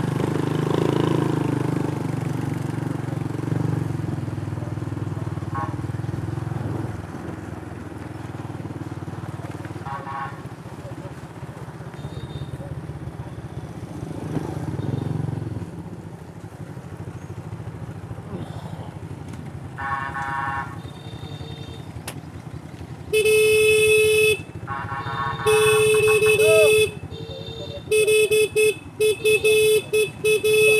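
Small motorcycle engines running along a lane, loudest in the first several seconds. From about 23 seconds in, a horn is honked loudly: two long blasts, then a rapid run of short toots.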